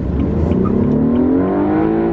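BMW 328i's 2.0-litre turbocharged four-cylinder engine revving up under acceleration, heard from inside the cabin, rising steadily in pitch. Right at the end the pitch starts to drop with an upshift of the automatic gearbox.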